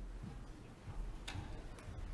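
Footsteps of a man walking across the church platform: a few soft taps, two of them sharper, about halfway through and near the end, over a low steady room hum.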